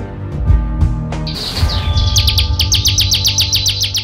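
A small songbird singing over background music: a high falling whistle, then a fast trill of chirps through the second half.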